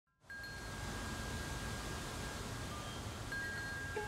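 A steady hiss with a few faint, long-held chime-like tones that fade and return.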